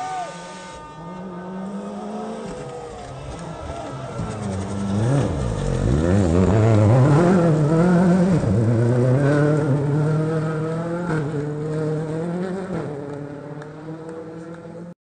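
Rally car engine coming through a gravel hairpin. The revs rise and fall sharply as it brakes and changes down, loudest about halfway through as it passes, then climb again through upshifts as it accelerates away.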